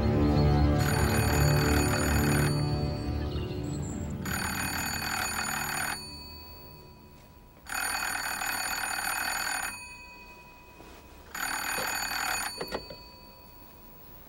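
Telephone bell ringing four times in long rings about three and a half seconds apart, the last ring cut short as the handset is picked up. Low sustained film music fades out under the first two rings.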